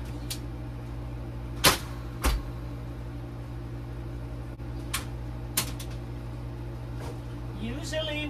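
Sharp knocks and clatter of cookware and storage being handled while a pressure cooker is fetched. There are four knocks: the loudest comes about one and a half seconds in, another follows soon after, and two quieter ones fall midway. A steady low hum runs underneath.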